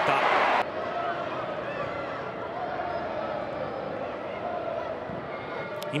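Football pitch ambience in a sparsely filled stadium: a low background murmur with a few faint shouts from the pitch. A louder burst of ambience stops abruptly under a second in, at an edit.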